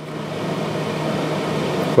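A steady rushing noise with a faint low hum under it, slowly swelling over the two seconds.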